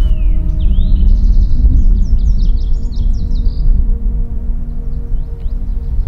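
Lazuli bunting singing: a quick run of varied, high chirping notes lasting about four seconds, with a few faint notes after, over background music.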